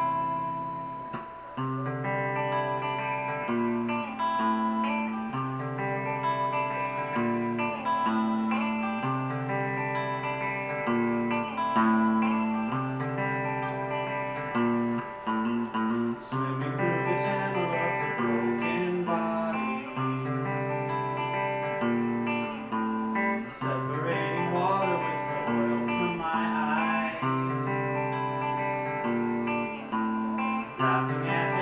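Solo electric guitar played through an amplifier, a repeating pattern of picked chords. A man's singing voice comes in over it about halfway through.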